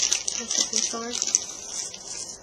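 Small clear plastic bag crinkling and rustling in quick, crackly strokes as fingers work it open.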